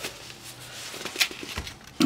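Plastic wrapping on a new sketchbook rustling and crinkling as it is handled, with a sharp click a little past a second in.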